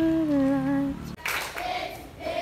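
A person humming one held note, rising at the start and then sustained for about a second before cutting off abruptly; after that come short noisy bursts with brief high voice fragments.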